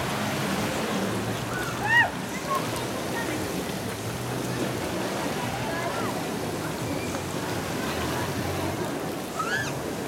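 Steady wash of moving water in a crowded wave pool, under a hubbub of many distant voices, with brief high-pitched children's squeals about two seconds in and again near the end; the squeal two seconds in is the loudest sound.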